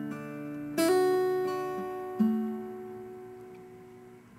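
Electric guitar with a clean tone, a D chord picked fingerstyle with a hammer-on on the high E string at the second fret. New notes sound just under a second in and again a little after two seconds, then the chord rings and slowly fades.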